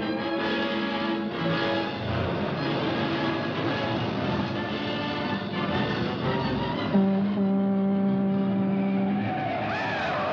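Orchestral film score playing sustained chords, which swell louder about seven seconds in, over the running noise of a car engine.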